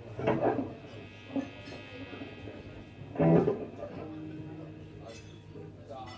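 Quiet held guitar notes ringing out, broken by two short loud bursts of voice, one near the start and one about halfway through.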